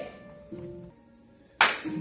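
Faint background music, then a single sharp crack near the end, with a short ringing tail.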